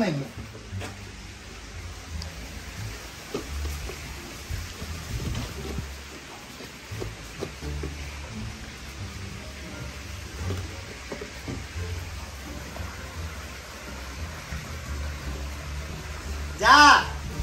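Wind buffeting the microphone: an uneven low rumble that comes and goes in gusts under a steady hiss, with a few faint knocks.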